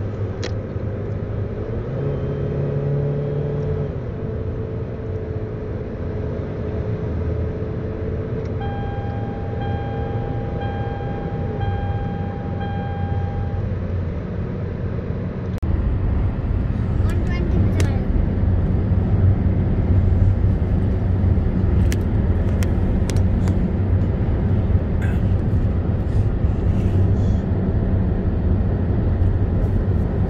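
Steady engine and tyre rumble heard inside a car's cabin at highway speed. In the middle, an electronic beep sounds repeatedly for about five seconds. A little past halfway the rumble gets louder and a few sharp clicks are heard.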